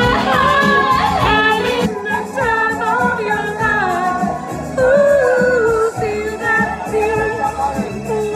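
A voice singing a melody with gliding, held notes over instrumental backing music.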